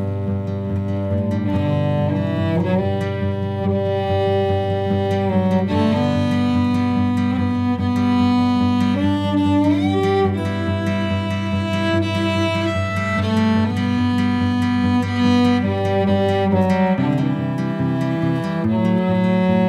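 Instrumental passage of bowed strings playing held, overlapping notes over a steady low note, with one note sliding up in pitch about ten seconds in.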